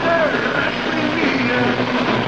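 Heavy metal band playing live in a raw concert recording: a dense wall of distorted electric guitar and bass, with a steady low note under higher notes that slide and bend in pitch.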